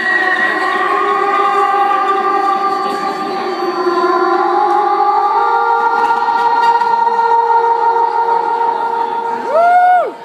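Live electronic music: sustained synthesizer chords held and slowly changing, played through the venue's PA. Near the end the tones bend sharply upward and the music cuts off suddenly, closing the song.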